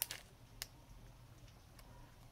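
A few faint, sharp clicks of a clear plastic sheet of self-adhesive dewdrops and its packaging being handled: one right at the start, one about half a second in and a fainter one near the end, over quiet room tone.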